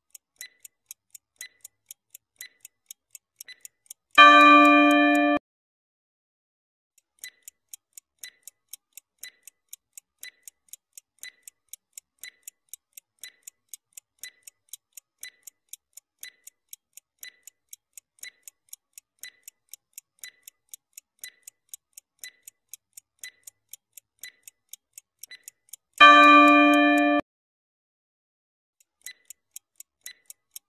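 Clock-ticking sound effect of a countdown timer, going steadily. It is broken twice by a loud, bell-like chime lasting about a second, about four seconds in and again near the end, marking the countdown running out. The ticking pauses for a moment after each chime, then starts again.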